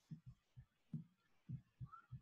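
Near silence broken by faint, dull low thuds, irregular at about four a second.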